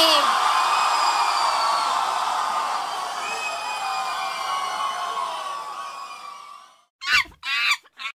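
A club crowd cheering and whooping, with scattered yells over the roar. It fades away over about six seconds. Two short voice-like bursts of sound follow near the end.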